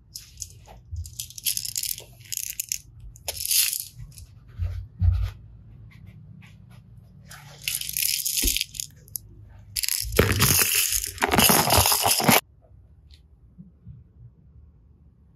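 Plastic toys and containers being handled: several bursts of rattling and crinkling, the longest about ten seconds in, cutting off abruptly soon after.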